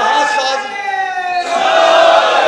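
Audience voices shouting together in long, drawn-out calls, held steady with a slight fall in pitch and a short break about one and a half seconds in, as a gathering calls out a slogan in unison.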